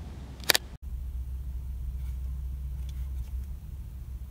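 A loud, sharp click of a button or dial on a Canon SL2 DSLR body, heard as handling noise through the camera's own microphone. Just under a second in the sound drops out briefly, and then a steady low rumble carries on with a few faint clicks.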